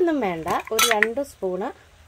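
A metal utensil clinking and scraping against a cooking pot of banana blossom stir fry, with a few sharp clinks about half a second to a second in, over a person's voice.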